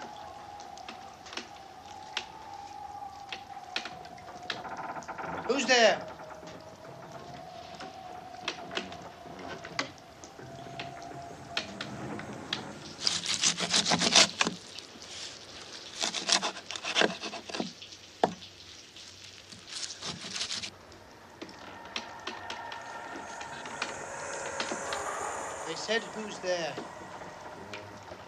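Horror-film soundtrack: a held, wavering tone with one short, loud creak about six seconds in. About halfway through comes a run of sharp strokes over several seconds: a knife chopping meat on a wooden board.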